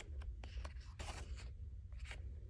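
Pages of a coloring book being turned by hand: a run of short paper rustles and flicks, with a steady low hum underneath.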